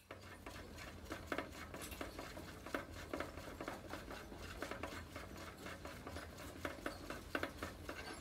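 Naked mole-rats moving about on loose bedding chips: irregular small clicks, taps and rustles over a steady low hum.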